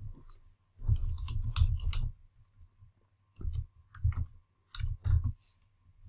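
Computer keyboard typing: a quick run of keystrokes, then a few single keystrokes, each a sharp click with a dull thump. It is the sound of typing a URL path into a browser address bar.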